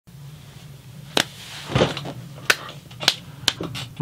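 A few sharp knocks and clicks at uneven intervals, with one duller, longer bump in between, over a low steady hum: the noises of someone moving into place in a seat.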